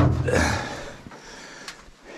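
Sharp click as the latch of a Cat D8T dozer's engine side cover is released, followed by a rushing noise that fades over about a second.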